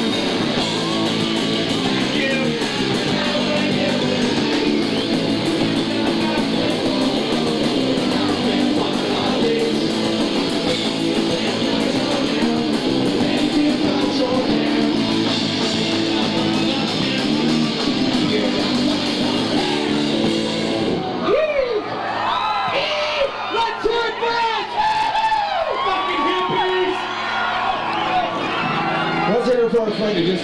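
Punk band playing live with electric guitar, cutting off abruptly about two-thirds of the way through. The crowd then yells and whoops.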